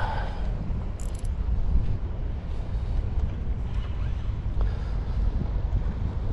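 Wind buffeting the microphone as a steady low rumble, under faint mechanical sounds of a baitcasting reel being worked while a hooked bass is played. A brief high-pitched rattle comes about a second in.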